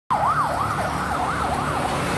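A siren wailing rapidly up and down, about two sweeps a second, over the rumble of passing road traffic; the wail stops near the end.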